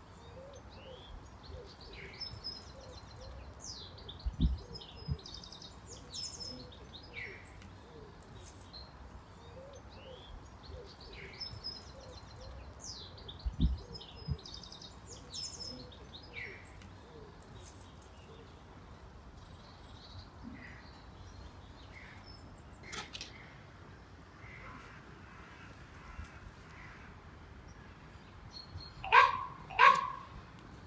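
Outdoor birdsong: several wild birds chirping and whistling throughout, with two low dull thuds about four and thirteen seconds in and a short louder sound just before the end.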